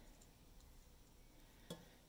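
Near silence: room tone, with a single small click near the end.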